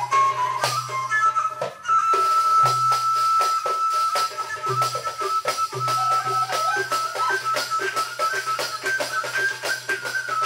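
Live Arabic ensemble music played on qanun, oud, violin and hand percussion: a long held melody note enters about two seconds in and carries on over quick, steady percussion strokes.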